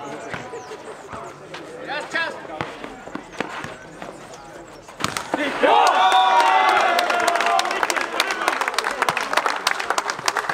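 A nohejbal rally on a clay court: the ball knocked and bouncing, with a few distant calls. About five seconds in, a loud shout of cheering and rapid clapping break out from players and spectators as the point is won.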